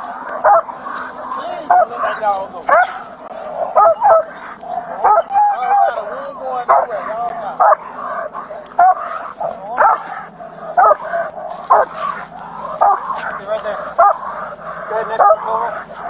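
Leashed police K-9 barking over and over, about one to two short barks a second with hardly a break, as it guards suspects being taken into custody.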